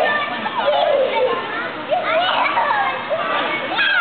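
Young children's voices, many shouting and squealing at once in high, overlapping calls.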